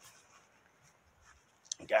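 Mostly quiet with faint scratchy rubbing and small clicks from the handheld camera being carried, then a man starts speaking near the end.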